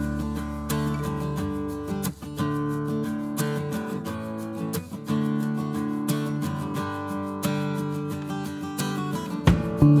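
Guitar music with strummed chords that change every second or so. About half a second before the end, a louder, deeper sound cuts in.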